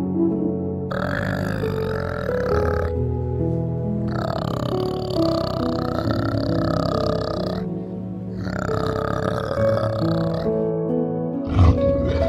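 Soft background music under three long, rough calls of two to three seconds each from a flanged male orangutan. A sudden thump comes near the end.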